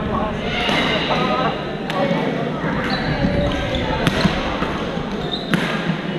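Badminton racquets striking a shuttlecock, sharp hits a second or two apart, over the chatter of many players echoing in a large sports hall.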